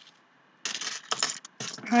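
Metal ball chains and stamped metal dog tags clinking and rattling as they are handled and set down on a table, in a quick run of small clinks starting about a third of the way in.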